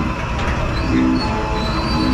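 Carousel in motion: its ride music plays over a steady low rumble from the turning machinery, with thin high-pitched tones sounding above it.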